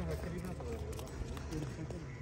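Faint voices of people talking in the background over a steady low rumble, with a few light clicks.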